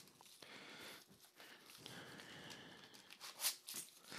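Faint rustling and handling of cardboard packaging as a small box is drawn out of a larger one. Near the end come a couple of short, soft knocks as the small box is set down on the table.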